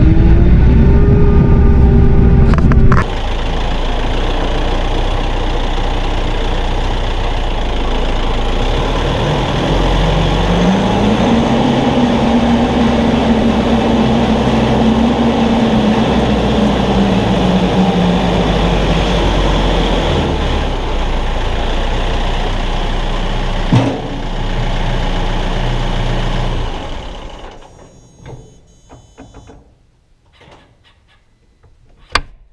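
Kioti RX7320 tractor's diesel engine running as the tractor is driven. About ten seconds in the engine speed rises, holds, then falls back. There is a single knock near 24 s, and the engine sound dies away near the end.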